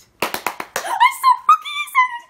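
A quick run of sharp hand claps, then a high-pitched excited squeal from a young woman's voice lasting about a second, giving way to laughter.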